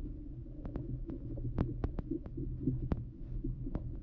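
Underwater sound picked up by a submerged GoPro Hero8 Black in a river: a muffled low rumble with about ten sharp clicks at uneven intervals.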